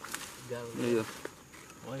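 Speech: a man talking, two short stretches about half a second in and near the end, with only faint background sound between them.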